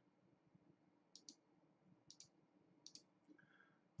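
Faint computer mouse clicks against near silence: three pairs of quick clicks, roughly a second apart.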